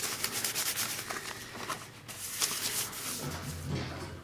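Wad of old phone-book paper rubbed rapidly back and forth over a shellacked collagraph plate, wiping surface ink away during intaglio inking: a fast, dry, scratchy rubbing that eases off in the second half.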